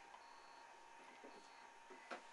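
Near silence: faint hiss with a steady thin hum, and two brief faint high beeps.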